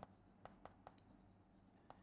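Chalk tapping and scratching faintly on a chalkboard in a few short strokes as a small label and arrow are written, against near silence.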